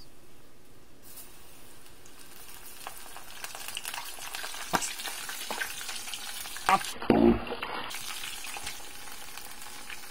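Flour-coated long-arm octopus pieces deep-frying in a small pan of hot oil: a steady sizzle that comes up about a second in, with scattered pops and crackles from the batter.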